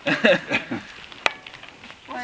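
A person laughing in short bursts, followed by a single sharp click a little over a second in.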